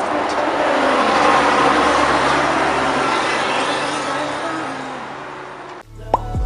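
A road vehicle passing on the street: a steady rush of engine and tyre noise that swells over the first couple of seconds and then slowly fades, cut off abruptly near the end.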